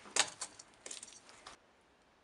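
Footsteps crunching through dry leaves and litter on a barn loft floor: a handful of short, sharp crunches that stop suddenly about one and a half seconds in.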